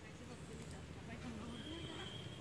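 A faint, distant voice rising and falling in pitch, with a thin steady high tone coming in near the end.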